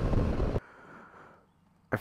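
Wind and road noise from a motorcycle ridden at highway speed. It cuts off abruptly about half a second in and gives way to near silence.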